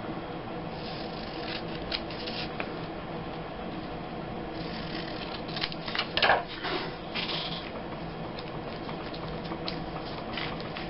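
Scissors snipping through a glossy photo print: a few short cuts scattered through, bunched in the middle, the strongest just past halfway, over a faint steady hum.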